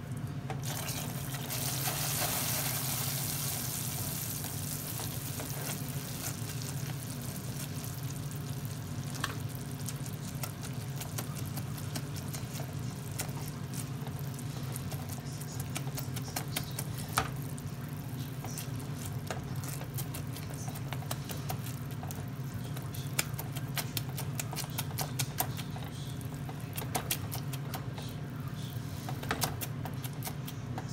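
Hot sugar syrup in a saucepan, stirred with a silicone spatula: a hissing bubble that is strongest a second or two in, then fades, with scattered clicks of the spatula against the pot that come more often near the end. A steady low hum runs underneath.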